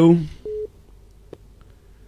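A single short, steady telephone-line beep, a fraction of a second long, comes in on a call-in phone line where no caller is answering. A man's voice trails off just before it, and a faint click follows about a second later.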